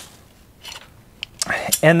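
Faint handling of metal TV-mount arms and their packaging: a soft rustle about two-thirds of a second in and a single small click just after a second.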